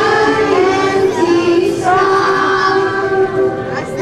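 A group of young children singing a song together, with music playing along.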